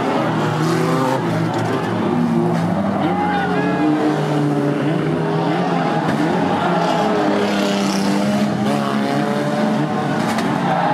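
Engines of several banger-racing cars revving unevenly together, pitches rising and falling as the cars push and shunt against one another in a pile-up.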